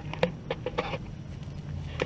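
Irregular clicks and knocks of a handheld camera being handled and swung round, over a low steady rumble.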